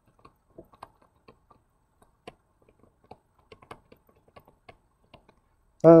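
Stylus tapping and scratching on a tablet screen while handwriting, a string of faint, irregular clicks.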